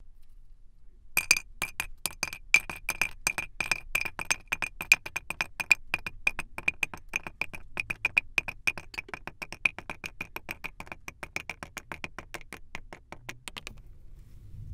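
Moulded cubes of kinetic sand dropped in quick succession into a clear plastic box, several clicks a second, each with the same short ring from the box. The clicks begin about a second in and stop shortly before the end.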